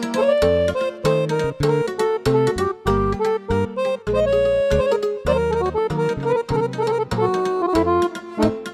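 Piano accordion, a Weltmeister, playing a fast folk tune in quick runs of short, detached notes over steady bass notes.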